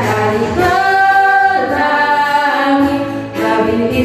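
Female voices singing a children's Sunday school worship song in Indonesian, a slow melody with long held notes.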